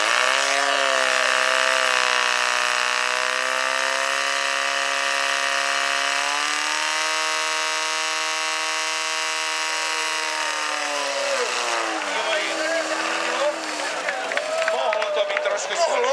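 Portable fire pump's engine running hard and steady. Its pitch steps up about six seconds in, then winds down about two-thirds of the way through, with a brief rise and fall after. Voices and crowd noise come up near the end.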